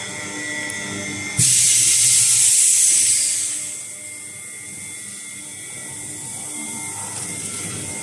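Double-chamber vacuum packaging machine: the lid comes down with a thump about a second and a half in, and a loud rush of air starts as the vacuum pump begins evacuating the chamber. The rush fades over about two seconds as the vacuum deepens, leaving the steady hum of the pump.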